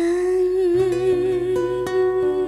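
A woman humming one long held note with a slight vibrato; about a second in, plucked acoustic guitar notes and a bass come in beneath it.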